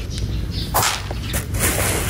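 Plastic bags of granular fertilizer rustling as a gloved hand reaches into them: a few short swishes, the longest near the end.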